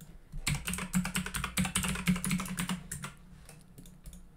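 Fast typing on a computer keyboard, a quick run of keystrokes that stops about three seconds in.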